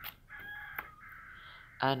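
A rooster crowing faintly: one held call of about a second and a half whose pitch steps down midway. A soft click sounds near the middle.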